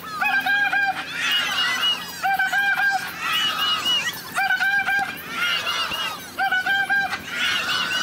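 A horn sounds three short blasts about every two seconds, the same each time, with a crowd cheering and shouting between the blasts.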